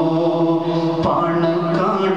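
Man singing a devotional praise song in a slow chanting style, holding long steady notes.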